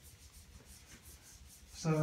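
Whiteboard eraser rubbing across a whiteboard, faint, in repeated wiping strokes.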